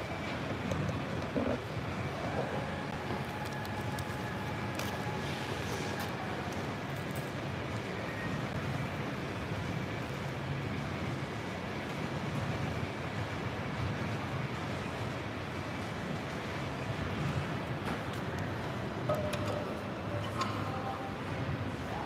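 Steady background noise of a large gym hall, with a few short metal knocks and clanks as a weight plate is loaded onto an incline bench's barbell, the plainest knocks near the end.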